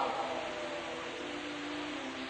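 Steady hiss of an old 1950s sermon recording in a pause between spoken phrases, with a few faint steady tones underneath.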